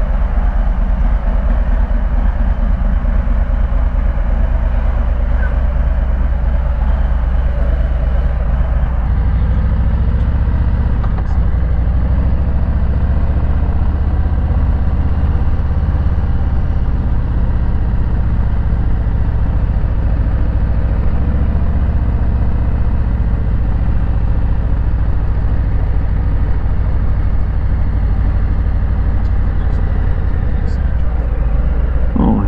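Harley-Davidson Low Rider S's Milwaukee-Eight 114 V-twin engine running steadily, getting deeper and fuller about nine seconds in as the bike gets under way, with road and wind noise.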